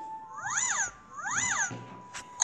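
Two identical cat-like animal calls from an animated storybook app's sound effect, about a second apart, each rising then falling in pitch.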